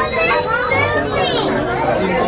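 Chatter of several voices, children among them, with high-pitched children's voices rising and falling in the first second and a half.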